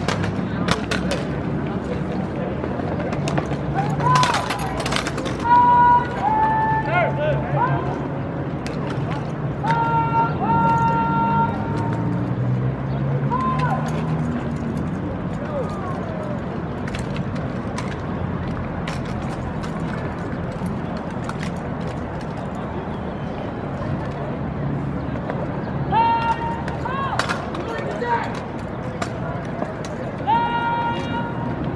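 Armed drill team at work: sharp clacks and slaps of rifles being handled, with several held, high shouted calls, over a steady murmur of spectators and cadets.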